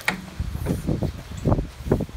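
A sharp click, then a run of dull bumps and knocks as someone climbs up into a compact tractor's cab, mixed with handling noise from a handheld phone.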